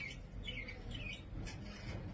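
Faint bird chirping in the background: four or five short chirps in the first second and a half, over a low room hush.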